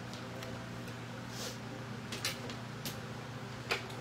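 Steady low electrical hum with a few light, sharp clicks and taps scattered through it.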